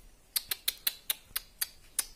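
Marmosets giving a quick series of about eight short, sharp, very high-pitched calls, a few a second.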